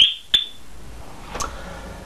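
Yale 6200 wire-free burglar alarm siren, a loud high warbling tone, cutting off at the very start as the alarm is disarmed. A single short bleep follows about a third of a second later, then quiet room noise with a faint click.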